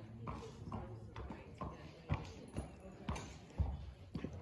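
Horses' hoofbeats on the dirt footing of a riding arena: a steady, irregular clip-clop of about two footfalls a second, with louder thuds about two seconds in and near the end.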